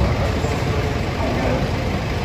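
Mercedes-Benz Sprinter van idling with a steady low rumble, with people talking in the background.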